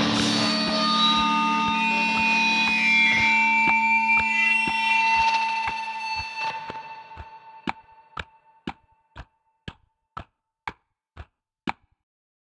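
Trailer music with sustained tones fading out over a steady clock-like ticking, about two ticks a second. The ticking carries on alone once the music has died away and stops shortly before the end.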